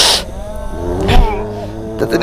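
Loud roar-like growling cries, with a sharp burst at the start and another about a second in, the pitch wavering between them.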